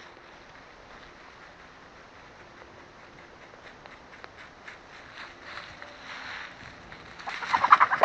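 Hens clucking, faint at first, then a louder burst of rapid squawking near the end as the flock is being rounded up.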